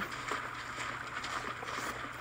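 Steady running water of a stream, a sound-effect ambience, with faint scattered knocks.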